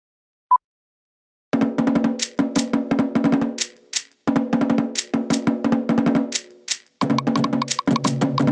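A short high beep, then Tahitian drum music starting about a second and a half in: rapid rolling strokes on to'ere slit drums over a deeper drum, with brief breaks near four and seven seconds.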